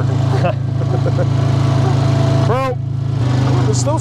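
Honda quad bike engine running steadily while riding across pasture, its note dropping slightly about three seconds in as the throttle eases. A single short, loud call cuts in over it about two and a half seconds in.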